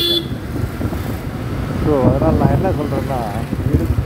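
Motorcycle engine running with the low rumble of city street traffic, heard from the rider's seat. A vehicle horn cuts off just after the start.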